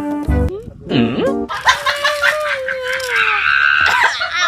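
Background music that cuts off about half a second in, followed by cartoon-style comedy sound effects. First comes a quick swooping glide down and back up, then a long, slowly falling whistle-like tone over a busy clatter of effects.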